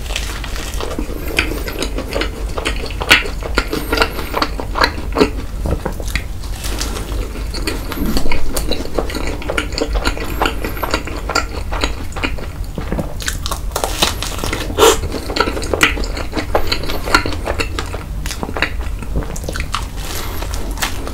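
Close-miked biting and chewing of a cream-filled blueberry-jam waffle: a steady run of short crunches and clicks, loudest about eight seconds in, over a steady low hum.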